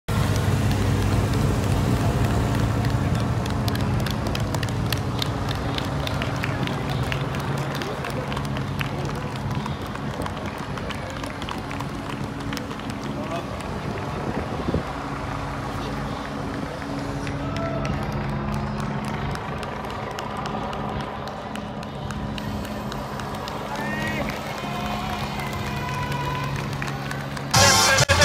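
Busy street ambience: a steady low engine hum from vehicles, with scattered voices and calls from the roadside. Loud music starts suddenly just before the end.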